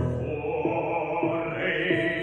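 Quieter passage of a classical song for solo voice: a loud held sung note ends at the start, and softer music with stepping pitches follows.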